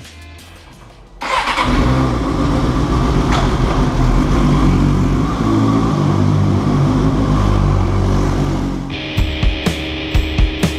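A motorcycle engine starts suddenly about a second in and keeps running inside a parking garage. Near the end, music with a drumbeat comes in.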